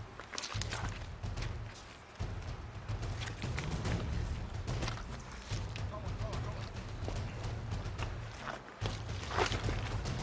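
Boots scuffing and scraping on a wet, muddy slope and rustling undergrowth as a soldier hauls up a steep bank on a rope, a run of irregular scrapes and knocks, with short indistinct vocal sounds over a low rumble on the microphone.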